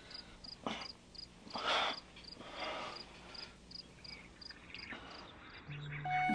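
Crickets chirping steadily, about three short high chirps a second, with a few louder rushes of noise over them.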